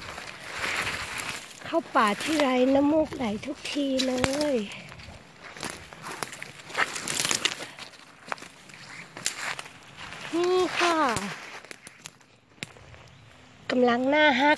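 Footsteps rustling through dry fallen leaves on a forest floor. A woman's voice comes in twice, about two seconds in and again near ten seconds.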